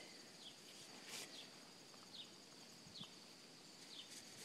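Near silence: faint rural outdoor ambience with a steady, high-pitched insect drone and five short falling chirps, repeating just under once a second.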